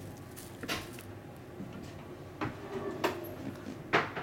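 Kittens scuffling at play on a wooden floor: four sharp knocks and scuffs, the loudest near the end, over a steady low room hum.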